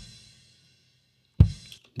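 Solo kick drum microphone track from a multi-mic drum recording played back in preview: two kick drum hits about a second and a half apart, the first right at the start and the second about 1.4 seconds in. Each is a short low hit that dies away quickly, with faint cymbal bleed ringing above the first.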